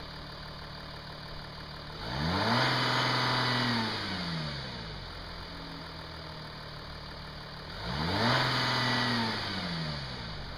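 2014 Audi A7 TDI's 3.0-litre V6 turbodiesel idling and revved twice: each time it climbs quickly, holds flat for about a second and a half, then falls back to idle. The flat hold is the stationary rev limit of about 2500 rpm.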